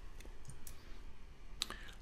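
A handful of faint computer mouse clicks over low room tone, the sharpest two close together near the end.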